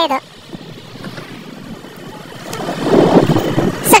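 Faint, even noise from a moving motorcycle, which swells into a louder rush about three seconds in.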